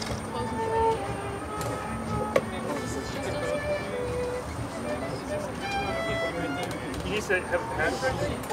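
Live ensemble music of scattered held notes at shifting pitches over a murmur of crowd voices, with one sharp click about two and a half seconds in. The voices grow more prominent near the end.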